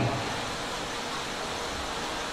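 Steady, even hiss of background noise, with no distinct event in it.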